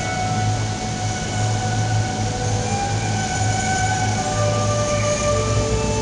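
Instrumental introduction on violin and keyboard: the violin plays long held notes over a keyboard accompaniment with a steady low pulse.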